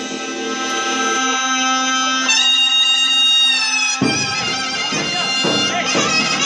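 Zurna, the loud Turkish double-reed shawm, playing a slow zeybek tune in long held notes, with a drum coming in about four seconds in.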